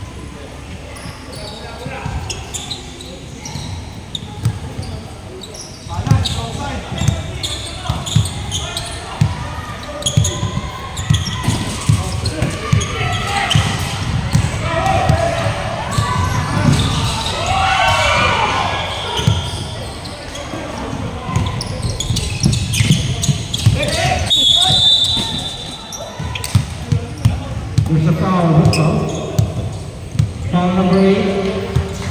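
Basketball bouncing again and again on a gym floor, a steady run of short thuds from about six seconds in, echoing in a large hall, with players shouting over it.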